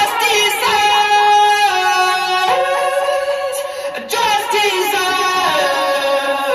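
Playback of the song: a sung vocal line with effects on it, over the music of the track.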